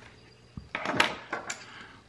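A small metal lighter being handled and set down on a tabletop: a soft thump about half a second in, then a second of clatter with a few sharp clicks.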